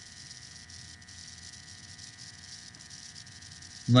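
Faint steady room noise and hiss, with a felt-tip marker writing on paper.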